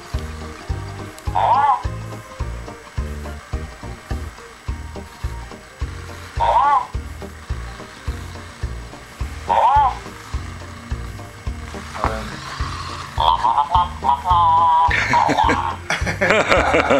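Electronic game music with a steady low beat from a WowWee MiP toy robot, broken by a few rising-and-falling chirps several seconds apart and a burst of warbling tones near the end, then a short robotic voice.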